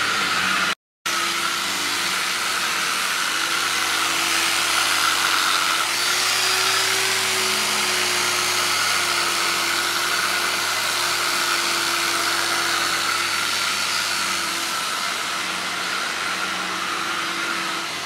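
Handheld electric rotary polisher buffing a trailer's aluminum rail: a steady motor whine over an even rush, with the pitch lifting a little about six seconds in. There is a brief cut to silence about a second in.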